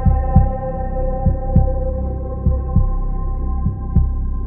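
Title-sequence sound design: a low heartbeat-like double thump about every 1.2 seconds under a sustained, slowly fading drone chord.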